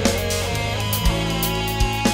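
Instrumental rock: electric guitar over held bass notes and drums, with a heavy drum hit about every three quarters of a second.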